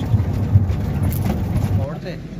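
Low rumble of a truck driving over a rough gravel road, with a small knock about half a second in. The rumble drops away abruptly just before the end.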